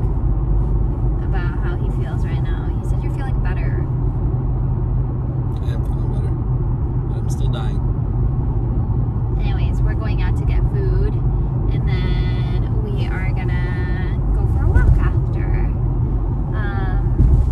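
Steady low road and engine rumble inside the cabin of a moving car, with a woman's voice over it at times.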